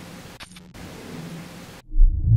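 Steady hiss of a camera microphone with faint low hum, briefly dipping about half a second in. Near the end, a loud low boom hits as the picture flashes white, a dramatic editing effect.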